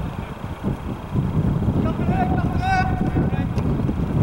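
Wind buffeting the microphone in a steady low rumble, with a drawn-out shout from across the pitch about two seconds in.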